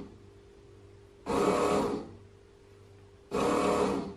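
Bread machine's kneading motor starting a program, running in short pulses of under a second about every two seconds as the paddle begins mixing the dough, with a faint steady hum between pulses.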